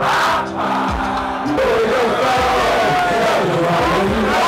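Live rap show: a backing track plays loud through the PA while a crowd of students shouts along. About a second and a half in, a held chord gives way to a pulsing beat with heavy bass.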